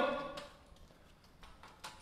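A voice trailing off at the start, then quiet room tone with a few faint, isolated clicks.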